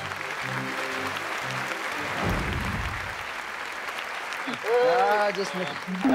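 Studio audience applauding, with a few low musical notes under it in the first two seconds and a short low thud a little after two seconds in. A man's exclamation breaks in near the end.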